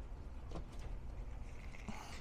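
Faint clicks and handling noise as a power cord's plug is pushed into the inverter's AC outlet, over a low steady hum.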